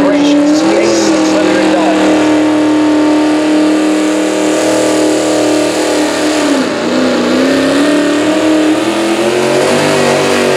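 Antique tractor's V-8 engine at high revs, pulling a sled down a dirt track. The revs rise about a second in and hold steady. They sag briefly around seven seconds in, then climb again.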